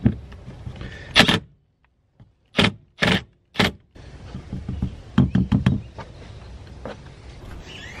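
Cordless drill driving a wood screw into a pine leg in short bursts of its motor, three of them about half a second apart, followed by a run of sharp knocks.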